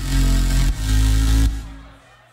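Loop-station beatbox music: layered vocal loops over a deep, sustained bass line, its notes changing about every three-quarters of a second. About one and a half seconds in, the loops cut out and the sound fades away.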